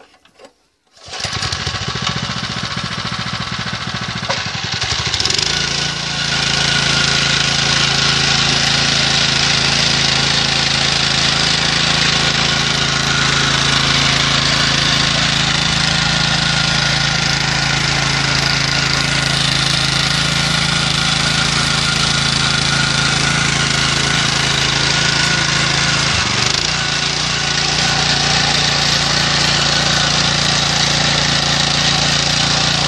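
Honda GX single-cylinder four-stroke engine on a power weeder, pull-started and catching about a second in. It runs slower for a few seconds, then speeds up around five seconds in and runs steadily under load as the tines churn the soil, with a brief dip in speed near the end.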